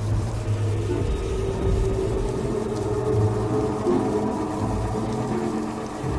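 Dramatic background score: sustained held notes over a deep, continuous low rumble.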